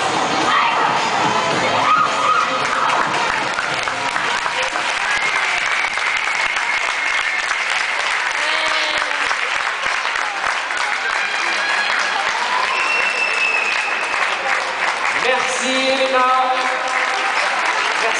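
An arena audience applauding steadily over music.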